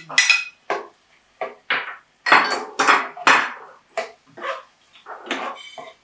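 A spoon stirring chopped onion, pepper and tomato in a metal cooking pot: a run of irregular scrapes and knocks against the pot, some with a short metallic ring.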